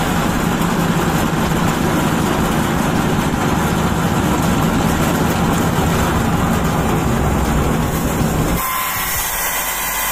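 Homemade steam turbine running under steam and belt-driving a 100-watt 12-volt car radiator fan motor used as a DC generator: a steady rush of steam over a low hum from the spinning machinery. The rush and hum drop off abruptly about eight and a half seconds in, leaving a lighter hiss.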